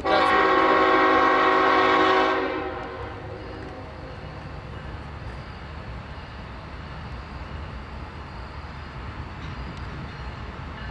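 Air horn of a Norfolk Southern GE Evolution-series (GEVO) diesel locomotive sounding one long chord blast of about two and a half seconds as the freight train approaches. It is followed by the steady low rumble of the locomotive and train rolling in.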